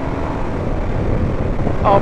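Indian FTR 1200's V-twin engine pulling hard in fifth gear at low road speed, under a steady rush of wind noise on the microphone.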